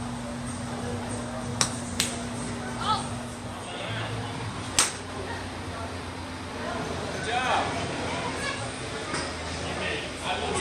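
Sharp cracks of golf clubs striking balls: two close together, then a third about three seconds later, over background voices.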